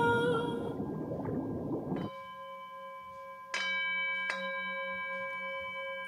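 A held sung note fades out, then a bell-like instrument rings with steady tones. It is struck twice, a little under a second apart, about halfway through, and rings on after each strike.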